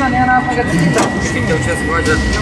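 Voices talking on location, over steady street background noise, with a thin steady high-pitched tone throughout and a sharp click about halfway.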